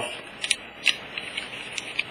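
A few light, sharp clicks, irregularly spaced, from small hard objects being handled, over a faint steady hiss.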